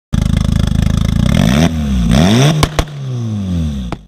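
A loud engine revving: held at high revs for about a second and a half, then the pitch dips and climbs again twice, two sharp cracks sound, and the revs fall away in a long downward glide that fades out.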